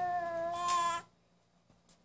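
Baby vocalizing: one high, held, meow-like coo or squeal lasting about a second.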